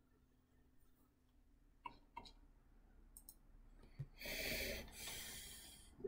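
Mostly near silence, broken by a few soft computer-mouse clicks about two and three seconds in. Near the end comes a breathy rush of noise for about a second and a half.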